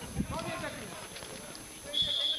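A man's voice speaking in short phrases, with a low thump a moment in; quieter in the second half.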